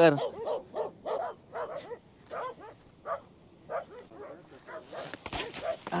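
Small dogs barking in a quick string of short barks.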